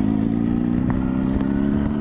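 Yamaha R1 sport bike's inline-four engine running at a steady, even pitch while the bike rides along.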